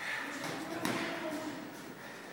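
Soft thuds and taps from two boxers sparring in the ring, with a faint voice in the background.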